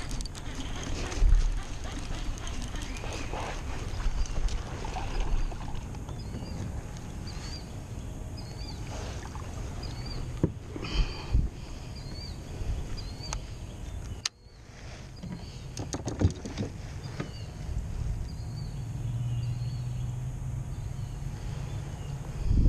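Hull and water sounds from a Pelican Bass Raider 10e fishing kayak while a bass is played on a bent rod, with sharp knocks and splashes about ten to seventeen seconds in. A small high chirp repeats about once a second through the middle.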